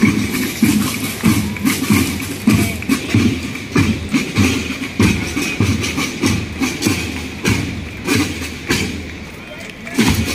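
Marching drum corps playing snare and bass drums in a steady march beat, about two strokes a second.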